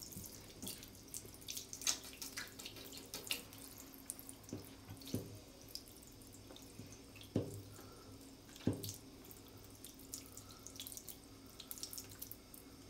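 Water from a handheld shower head running onto a wet cat's fur and a tiled shower floor: a faint steady hiss with irregular splashes and drips, and a few louder splats.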